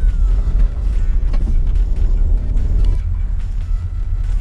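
Inside the cabin of a moving Nissan X-Trail: a steady low rumble of road and engine noise, with background music over it.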